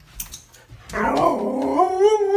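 A husky "talking" back in protest: starting about a second in, a long, drawn-out, howl-like vocalisation whose pitch wavers up and down.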